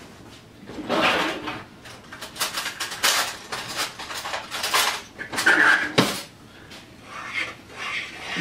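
A kitchen drawer pulled open and metal utensils clattering and clinking as someone rummages through them, with a sharp knock about six seconds in.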